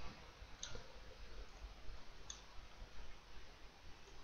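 Two faint computer mouse clicks, one about half a second in and another a little past two seconds, over a low, steady background hiss.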